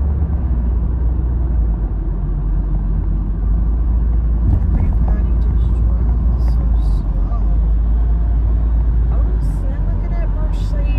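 Steady low road and engine rumble heard inside the cabin of a moving car, with faint voices in the middle and again near the end.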